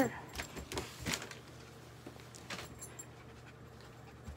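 A dog panting close by, with a faint jingle of metal tags and a few soft bumps and rustles from handling in the first second or so.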